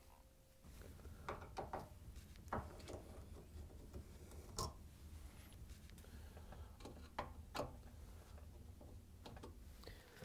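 Faint, irregular clicks and scrapes of a Phillips screwdriver backing out the screws that hold a dishwasher's top mounting bracket to the underside of the countertop, over a low steady hum.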